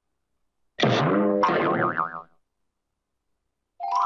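Cartoon sound effect: a springy boing with a wobbling pitch, lasting about a second and a half. Near the end a rising, chime-like tone begins.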